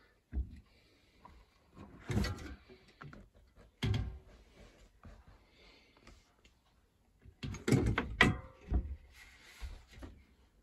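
Handling knocks and clatter as the camera and a bicycle wheel are moved about on a wooden workbench: a thump near the start, others about two and four seconds in, and a busier run of knocks near the end.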